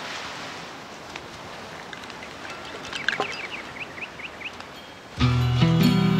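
A soft rushing wash like surf or wind, with a run of short high chirps a little past halfway, then music starts suddenly near the end.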